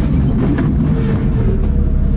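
Off-road vehicle's engine running with a steady low rumble, with background music.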